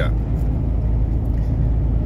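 Steady low drone of a truck's engine and tyres, heard inside the cab while cruising at highway speed.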